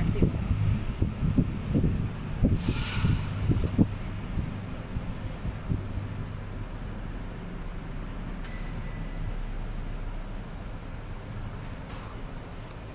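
Steady low rumble of a large covered carpark picked up on a handheld phone, with wind buffeting and knocks on the microphone in the first few seconds and a short hiss about three seconds in; it settles to an even hum.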